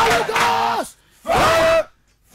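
A group of men shouting loud prayer cries together: one long shout, a brief pause, then a second shout about a second later, part of a rhythmic run of repeated shouts.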